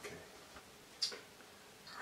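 Quiet room with one short, sharp click about a second in.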